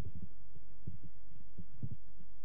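Microphone handling noise: a handful of irregular low thuds and rubs as the podium microphone is gripped and adjusted, over a steady low mains hum in the sound system.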